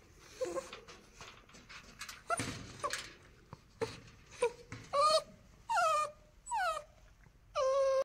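Belgian Malinois puppy whimpering: short cries at first, then four longer, high whines that fall in pitch over the last three seconds.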